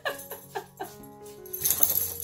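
Alaskan malamute whining in about four short whimpers, each falling in pitch, in the first second, over background music that turns bright and jingly near the end.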